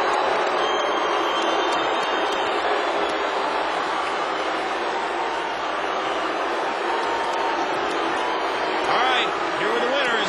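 Arena crowd reacting to a majority-decision verdict in a boxing bout: a steady, dense noise of many voices shouting at once. A single voice rises above it near the end.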